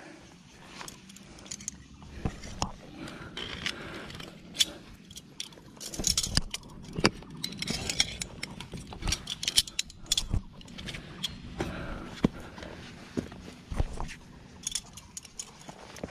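Steel carabiners on a climbing harness lanyard clinking against each other and against the metal anchor rings and fixed rope, in many irregular sharp clicks.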